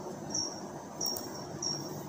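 A short, high-pitched chirp repeating evenly about every two-thirds of a second over faint room tone.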